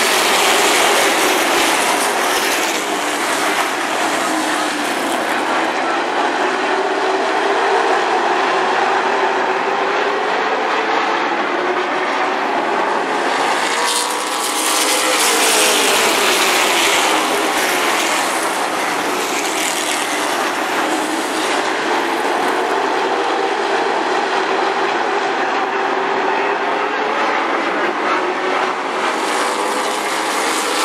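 A pack of late model stock car V8 engines at racing speed around a short oval track. The pitch rises and falls as cars pass and lift through the turns. It is loudest about fourteen to seventeen seconds in, as the pack goes by close.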